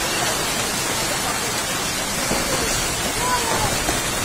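Steady rushing noise of soil and debris pouring down a steep mine cliff face in a landslide, with faint shouting voices in the middle.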